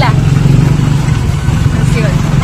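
Motorcycle engine of a motorized tricycle running steadily under way, a loud low drone heard from inside the sidecar.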